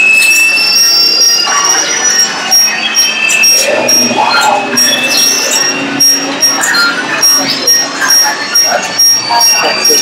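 Indistinct chatter of people in a busy room, with a high-pitched beep repeating about twice a second behind it.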